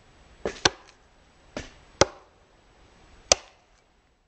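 Axe chopping into wood: a string of about five sharp chops, the three loudest spaced over a second apart.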